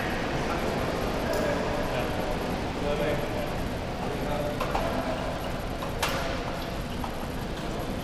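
Gym room ambience: indistinct background voices with a few sharp clicks, the loudest about six seconds in.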